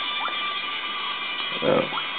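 Steady background hiss with faint, unchanging tones, the recording noise of a low-quality camera microphone, and a short spoken "uh" near the end.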